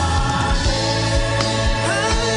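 Gospel choir singing long held notes over a band, with a steady drum beat underneath.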